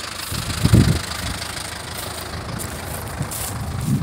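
Ursus C-360 tractor's four-cylinder diesel engine running steadily, with a short low thump a little under a second in.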